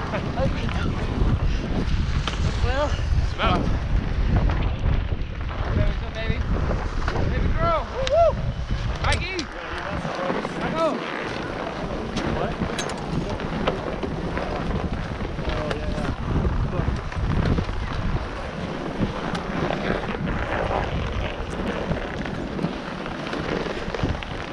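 Wind buffeting an action camera's microphone as its wearer moves across the snow, a steady low rumble that eases briefly partway through. Scattered voices of skiers and snowboarders are heard around it.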